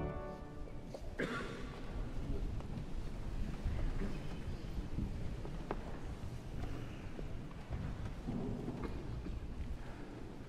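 The last organ chord dies away in the church's reverberation. A congregation then sits back down in wooden pews: low shuffling and rustling with occasional sharp knocks and creaks.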